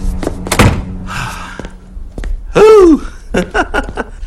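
A door slams shut with a loud thunk about half a second in, over film-score music that fades away. Later a man's voice gives a short exclamation that rises and falls in pitch.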